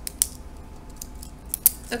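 Plastic pens being picked up and handled on a desk: a few sharp clicks and light clatter, the loudest about a fifth of a second in and just before the end.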